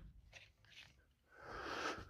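Near silence, broken near the end by a faint, short breathy noise lasting about half a second.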